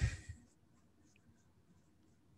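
Near silence on a video-call line, after a short soft noise right at the start.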